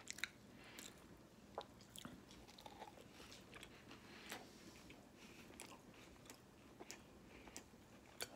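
Faint chewing of a soft chocolate chip biscuit close to the microphone: scattered small mouth clicks and smacks.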